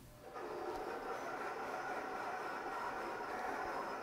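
Roland CAMM-1 GS-24 vinyl cutter running as it cuts a sheet of heat transfer vinyl: a steady mechanical whir with a faint high whine, starting a moment in.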